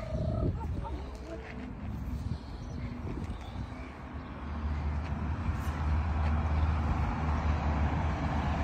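A motor vehicle's engine running, a low steady rumble that grows louder from about halfway through as it comes closer.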